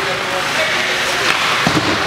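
Ice hockey rink ambience during play: a steady hiss of noise with faint voices from the stands, and a dull thump near the end.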